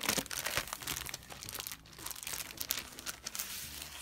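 Clear plastic packaging crinkling as it is handled and a cardstock sticker sheet is slid out of it. It makes a run of irregular crackles, busiest in the first half.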